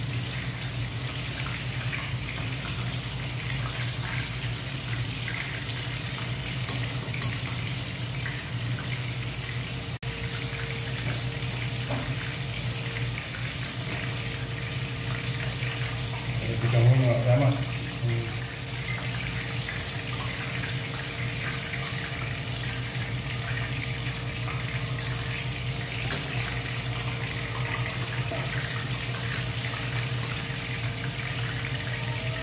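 Chicken pieces frying in hot oil in a pan: a steady sizzling hiss over a low hum, with one brief louder sound a little past halfway.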